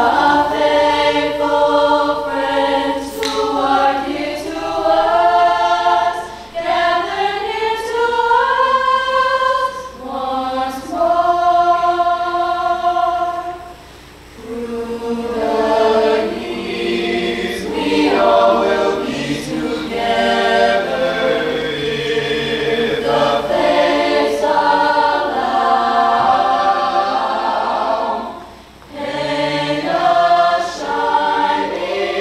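A choir singing, several voices sustaining and gliding together in harmony, with a pause between phrases about halfway through and another near the end.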